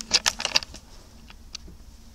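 A quick run of sharp clicks and hissy rustles in the first half second, then a few faint scattered ticks.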